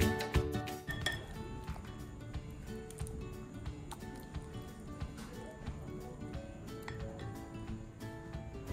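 Wooden spoon stirring a thick egg-and-vegetable batter in a glass bowl, with light clinks and taps against the glass. Soft background music plays underneath.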